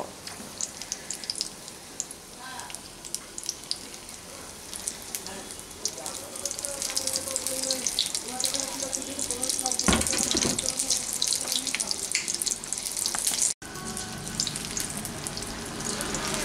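Battered egg-and-tomato pakoras deep-frying in hot oil in a metal kadai: a steady crackling sizzle that grows louder about six seconds in. A dull knock sounds about ten seconds in.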